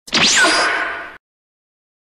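A whoosh sound effect, about a second long, sweeping down in pitch and cutting off abruptly.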